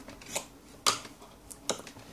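A few light clicks and knocks from a small wooden board fitted with a mains socket, switch and light-bulb holder being handled and lifted off the bench; the sharpest click comes about a second in.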